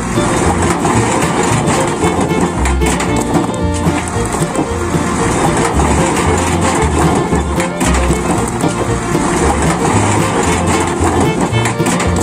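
Background music with a steady, repeating beat, loud throughout.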